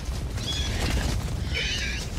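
Wind rumbling on the microphone, with two short high-pitched calls about a second apart.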